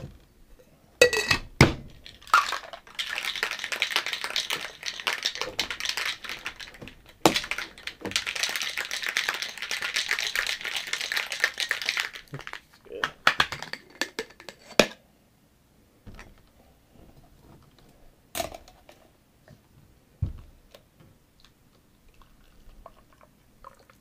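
Ice rattling hard inside a metal cocktail shaker, shaken for about nine seconds with a short break in the middle, followed by a few clicks and knocks as the shaker is handled.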